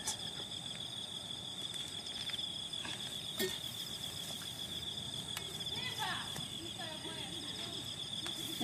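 Steady high-pitched insect chorus, a pulsing buzz with no break. About three seconds in come two light knocks from a machete striking a green coconut's husk.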